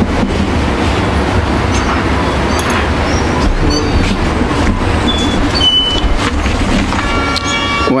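Loud, steady rumbling noise, with a steady tone sounding in the last second.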